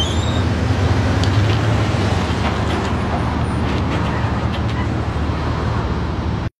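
A motor vehicle's engine running steadily at a low pitch, with parking-lot traffic noise around it.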